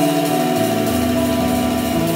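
Live jazz trio playing, led by a tenor saxophone holding long notes that move step by step. Low accompanying notes come in about half a second in.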